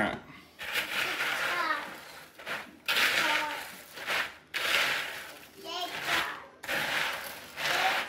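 Dry cereal being stirred with a wooden spoon in a plastic bowl as melted chocolate is folded through it: a crisp rustling scrape in about five strokes of a second or so each.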